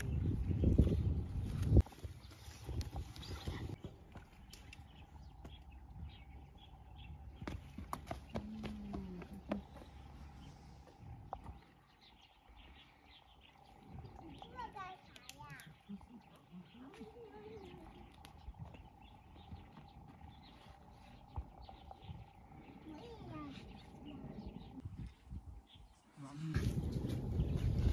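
Quiet outdoor ambience: a low rumble of wind on the microphone in the first two seconds, then scattered small snaps and clicks of twigs being handled, with a faint steady tone throughout and a few brief distant voices.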